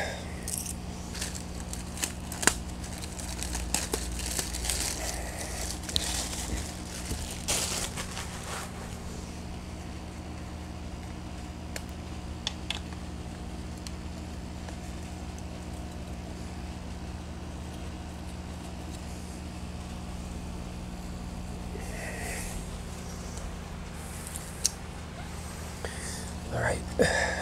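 Handling noises of a plastic molasses jug and cup being worked over a compost-tea reservoir: scattered clicks and crinkles, busiest in the first several seconds and again near the end, over a constant low electrical hum.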